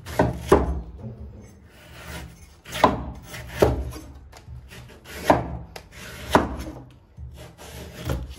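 A steel cleaver slicing the husk off a palm fruit and meeting the wooden chopping board, about six short, sharp cutting strokes at uneven intervals.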